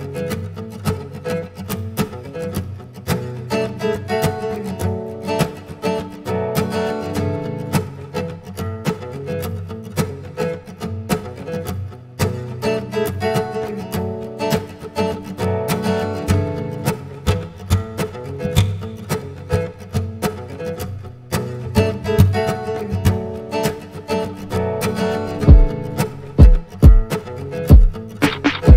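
Acoustic guitar played without singing, chords picked and left ringing. Near the end come several loud, low thumps.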